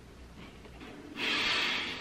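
A short, forceful breath out through the nose, a noisy hiss a little over a second in that lasts about two-thirds of a second, over quiet room tone.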